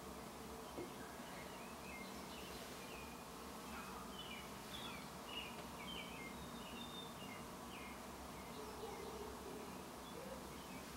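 Faint steady room hum with scattered faint high-pitched chirps, starting about a second and a half in and dying out near the end.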